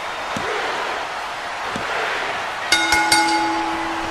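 Steady arena crowd noise with two soft thumps in the first half, then a ring bell struck several times in quick succession about two-thirds of the way in, ringing on for over a second: the bell signals the end of the match after the pinfall.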